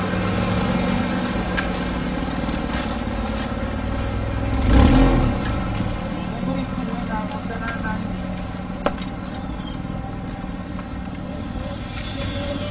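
Car engine running steadily, with a brief loud surge about five seconds in as the car pulls away.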